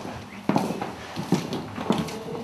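Footsteps of people walking across a bare floor: a few separate steps.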